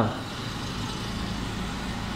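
Steady background hum and hiss with no distinct sound standing out.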